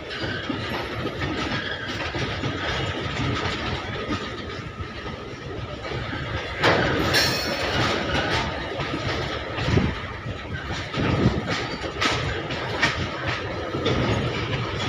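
Loaded goods train of covered freight wagons rolling past: a steady rumble of wheels on rail with a faint steady high ring, a louder rush of noise about seven seconds in, and several sharp knocks in the later half.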